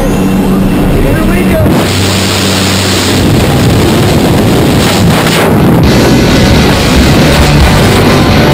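Loud rock music with a voice in it, playing steadily throughout.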